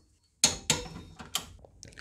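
Torque wrench clicking on a brake caliper bracket bolt as it is tightened to 70 ft-lb: three sharp metallic clicks with a short ring, starting about half a second in, with a couple of fainter ticks between.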